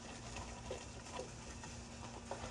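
Faint patter and rustle of frozen peas shaken from a plastic bag into a metal bowl of frozen vegetables, a few light ticks over a steady low hum.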